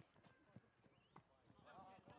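Faint, distant shouts of players on a soccer pitch, with two soft knocks of the ball being played, about half a second and just over a second in.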